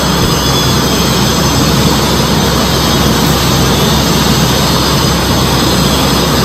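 A loud, steady rushing noise with a low hum beneath it.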